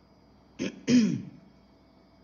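A woman clearing her throat twice: a short rasp, then a louder one about a second in.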